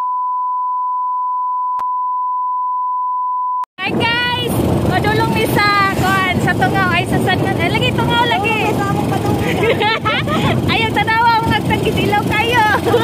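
A steady high-pitched beep tone held for nearly four seconds, cutting off suddenly, of the kind added in editing. After it come people's voices over a low rumble from wind on the microphone.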